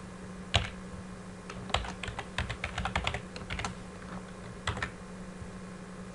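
Typing on a computer keyboard: a single keystroke about half a second in, a quick run of keystrokes from about one and a half to nearly four seconds, and a couple more near five seconds.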